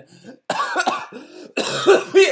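A man coughing in two rough bouts, the first about half a second in and a louder one near the end.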